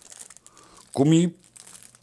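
Clear plastic packaging bag crinkling faintly as a small part is handled in it, with one short spoken syllable about a second in.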